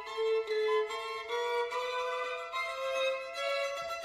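Two violins playing a classical duet, several notes sounding together, with the lowest held line stepping slowly upward while the upper notes change every fraction of a second.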